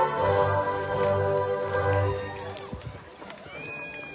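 Orchestral music with long held notes, thinning out briefly near the end.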